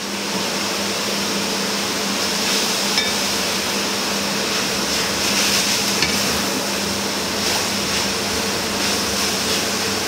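Chicken and green vegetables sizzling steadily in a frying pan of hot coconut oil, stirred with a wooden spatula, over a constant low hum.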